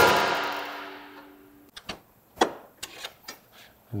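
A sharp metal clank from a draper header's reel cam and its locking pin as the pin is worked back into the cam, ringing out for about a second and a half. A few light metal clicks and a louder knock follow about two and a half seconds in.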